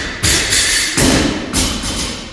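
Steel pull-up rig jolting and clanking under kipping pull-ups: a run of loud thuds, about four in two seconds, each with a short ringing tail.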